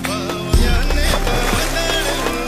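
A Bollywood film song playing: a wavering melodic line over drum beats.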